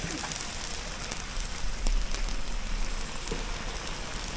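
Steady crackling hiss from a fire-heated cauldron of diced pork fat beginning to render for čvarci, with salt sprinkled over the fat by hand.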